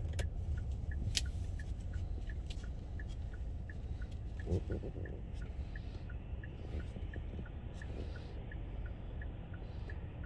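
Inside a car: the engine running with a steady low rumble, and the turn-signal indicator ticking evenly about three times a second.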